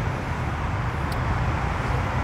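Steady low rumble of semi-truck diesel engines running, with a faint click about a second in.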